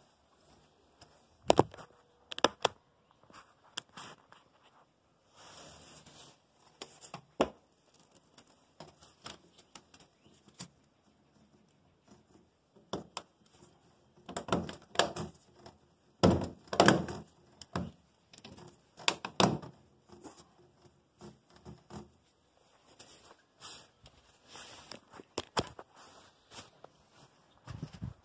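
Corrugated plastic vacuum hose being pushed and worked onto a 3D-printed port adapter on a steel blast cabinet: scattered knocks and thunks against the cabinet panel with rubbing and crackling between them, loudest a little past the middle.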